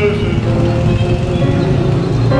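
A male classical singer holding sung notes with grand piano accompaniment.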